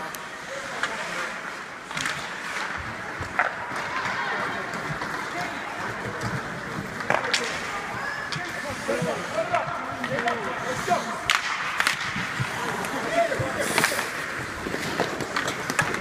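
Rink crowd noise of spectators talking and calling out, with a few sharp clacks from hockey sticks and puck on the ice.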